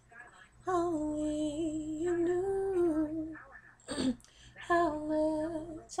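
A woman singing solo without accompaniment, drawing out two long phrases whose held notes waver in pitch, with a brief noise between them about four seconds in.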